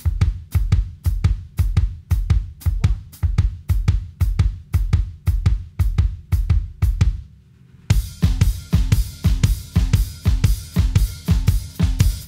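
Drum kit playing a steady shuffle groove: bass drum, the left hand moving between snare and hi-hat, and the hi-hat pedal opening and closing under the left foot. The groove stops about seven seconds in and starts again a second later with more hi-hat sizzle.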